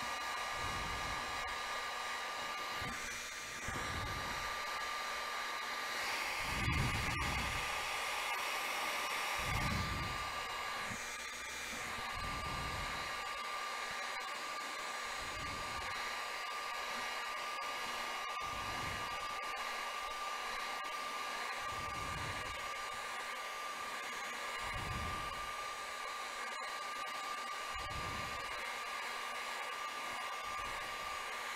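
Heat gun blowing steadily with a constant whine from its fan motor, heating the phone's glass to soften the adhesive beneath it. Low buffeting swells come and go every few seconds.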